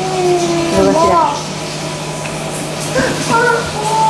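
Wordless voice sounds: a drawn-out, gliding sung or hummed tone in the first second, then short high-pitched vocalizing about three seconds in. Both sit over a steady low hum.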